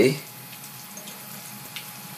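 Faint water sounds from a fistful of sphagnum moss being pressed down into a glass bowl of water, with a light tick about a second in.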